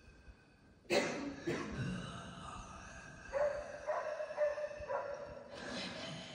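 Solo female voice in an experimental vocal improvisation, amplified through a microphone: a sudden loud animal-like cry about a second in, then a held, pulsing tone from about the middle to near the end.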